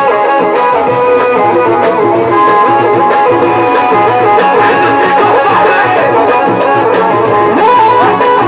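Loud live raï music played on keyboard synthesizers: an ornamented, Middle Eastern-style melody with wavering pitch over a pulsing bass.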